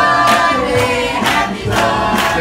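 Singing with music and a steady beat of about two strokes a second, the voices holding notes.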